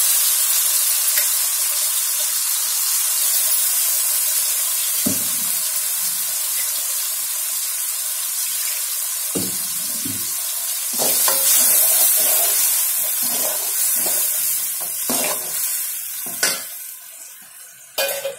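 Shallots, garlic and a ground paste frying in hot oil in a metal kadai, giving a steady sizzle. A steel ladle scrapes and stirs against the pan now and then from about five seconds in, most often in the second half. The sizzle dies down near the end.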